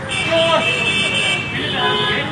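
A vehicle horn honks for over a second, then again briefly near the end, over street traffic, with men's voices talking.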